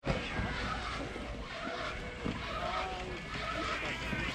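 Skis sliding slowly over packed snow, a steady scraping hiss, with a low rumble of wind on the microphone.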